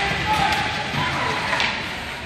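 Ice hockey rink noise: skates and sticks on the ice and thuds of players and puck against the boards, under faint distant voices.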